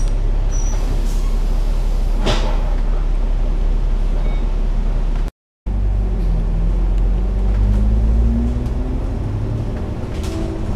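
Alexander Dennis Enviro500 MMC double-decker bus running, heard from the upper deck as a steady low rumble. A short hiss of air from the brakes comes about two seconds in. After a brief dropout midway, the engine and gearbox note rises as the bus pulls ahead.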